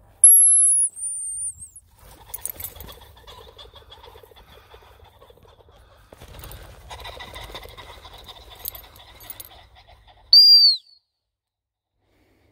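Two blasts on a high-pitched gundog whistle. The first, about a second and a half long at the start, drops slightly in pitch partway through. The second, shorter and lower, comes near the end. In between is quieter, irregular rustling.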